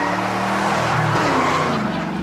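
A 2009 Ford Flex SUV taking a left turn, its tyres squealing over the running engine.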